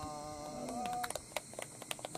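A person's drawn-out vocal exclamation lasting about a second, rising in pitch near its end, followed by a quick irregular run of sharp clicks.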